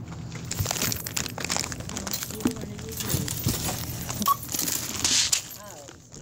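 Goods being handled at a store checkout: a string of knocks, clinks and rustles, with a single short beep about four seconds in, typical of a barcode scanner.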